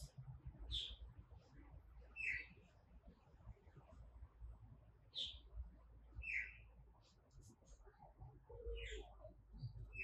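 Faint birds chirping outdoors: short, high calls every second or two, irregularly spaced, over a faint low rumble.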